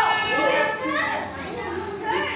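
A group of children's voices talking and calling out over one another, no words clear, fading a little in the second half.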